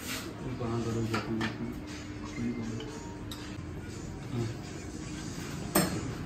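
Workshop room sound: men talking in the background, with a few light metallic clicks and clinks from hand tools.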